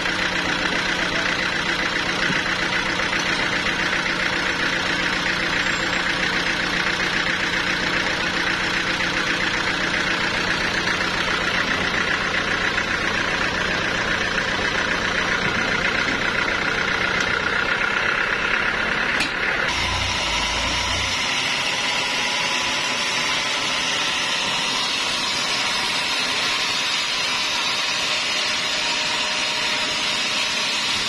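A band sawmill's engine running steadily at idle. About two-thirds of the way through it changes abruptly to a thinner, hissier machine sound with a faint rising whine.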